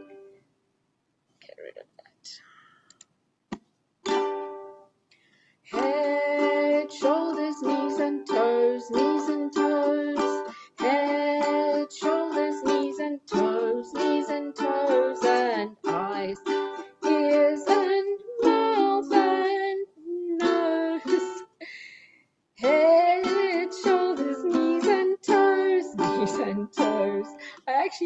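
Ukulele strummed in chords, starting about five seconds in after a near-silent pause, breaking off briefly near the end and then starting again. The player is trying out chords she has forgotten.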